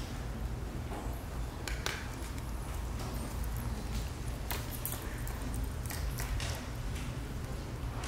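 Steady low room hum with scattered short rustles and soft taps of a person moving on a hard floor in robes.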